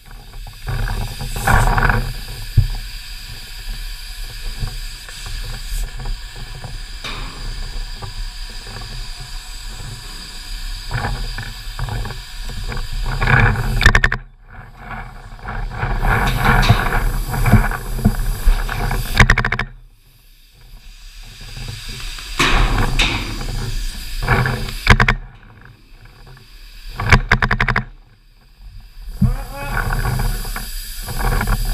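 Wind buffeting a head-mounted action camera's microphone, with footsteps and the rustle of gear as the player moves on foot; the noise comes and goes in gusts, dropping away briefly a few times.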